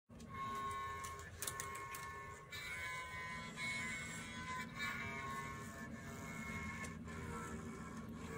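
A cello with a body made from a block of ice, bowed in long sustained notes that change pitch every second or so as an instrumental opening.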